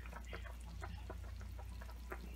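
Sauce simmering in a skillet of braising meat and vegetables, bubbling with many small irregular pops, over a steady low hum.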